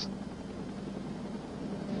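Steady, even rush of noise from motorboats running at speed across open water, with no clear engine note.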